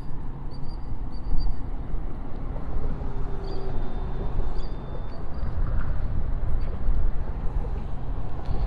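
Wind buffeting the microphone: a steady low rumble, with a few faint high chirps in the first second and a half.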